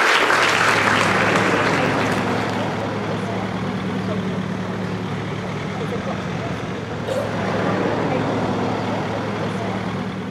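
Applause dying away at the start, then a Mercedes Sprinter minibus engine running with a steady low hum as the minibus drives slowly through a car park.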